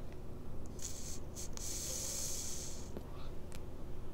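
A long draw on an e-cigarette: a soft, steady hiss of air pulled through the device starts about a second in and lasts about two seconds. Near the end the vapour is breathed out.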